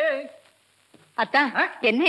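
A voice holding a sung 'la' note with vibrato trails off within the first half-second. After a brief pause, a man starts speaking about a second in.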